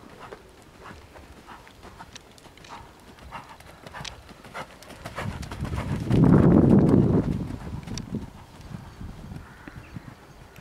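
A horse's hoofbeats at the canter on an arena surface, a steady rhythm of strokes that grows much louder for a second or two about six seconds in, as the horse passes close.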